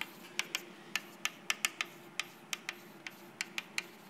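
Chalk writing on a blackboard: an irregular run of sharp clicks and taps, about three or four a second, as each letter is struck onto the board.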